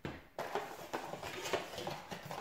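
Thin plastic packaging bag crinkling and rustling as it is handled, an irregular crackle starting about half a second in.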